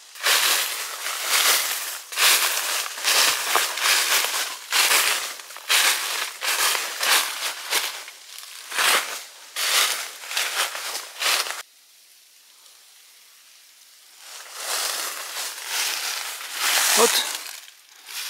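Footsteps crunching through a thick layer of dry fallen leaves, about two steps a second. They pause for a couple of seconds past the middle, then resume.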